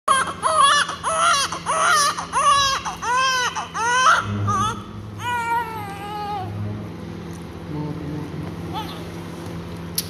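Newborn baby, minutes after birth, crying: a quick run of short rising-and-falling cries, about two a second, for the first four seconds, then one longer drawn-out cry, after which the crying dies down to faint.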